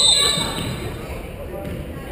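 A referee's whistle blast cuts off just after the start, followed by voices and the thuds of a dribbled basketball echoing in the gymnasium.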